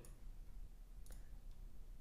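A single faint computer mouse click about a second in, over quiet room tone.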